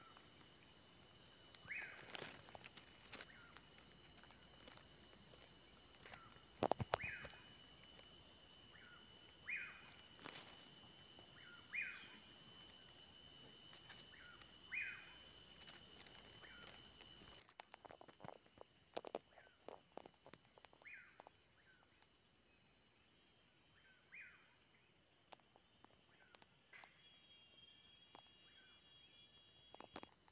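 Faint night chorus of crickets, a steady high shrill, with a short chirping call repeated every two to three seconds and a few soft knocks. A little over halfway through, the sound cuts abruptly to a quieter chorus, and the chirps carry on.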